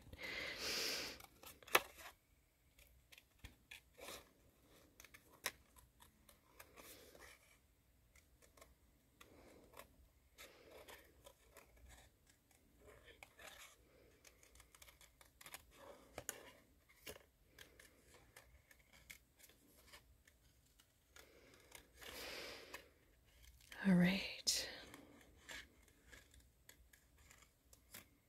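Small scissors making faint, irregular snips through white cardstock, cutting closely around a stamped flower outline, with light paper handling between cuts. A short laugh comes at the very start.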